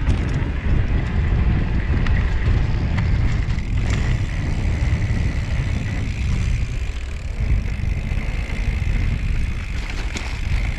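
Haibike XDURO ALLMTN 2.0 electric mountain bike being ridden over a dirt trail: heavy wind buffeting on a frame-mounted microphone and rolling tyre noise, with a faint steady high whine.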